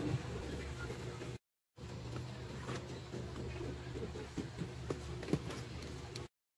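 Store background with a steady low hum and scattered light knocks and clicks of cardboard boxes being handled in a wire shopping cart. The sound drops out completely for a moment about a second and a half in.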